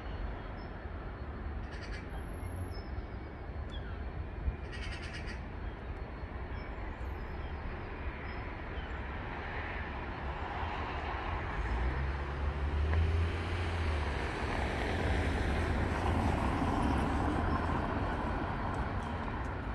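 Outdoor town ambience: a steady low rumble of distant traffic, growing louder in the second half, with a few faint bird calls.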